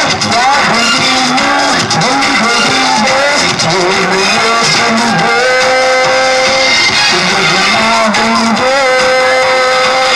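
A young man singing a melodic, ornamented song into a corded microphone, amplified through a sound system. He holds one long note about halfway through and another near the end.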